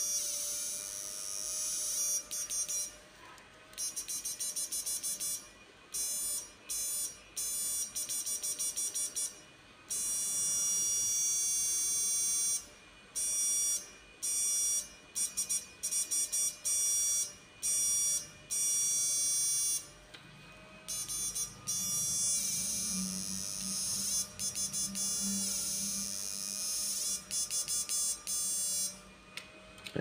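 Electrofishing inverter (an 8-MOSFET 'kích cá' unit) firing into a halogen test lamp, its high-pitched electronic buzz switching on and off in irregular bursts, some quick and stuttering, some held for a second or two.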